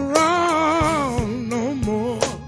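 Male blues singer holding one long sung note with vibrato on the word "around", sliding slowly down in pitch, over a live band's backing.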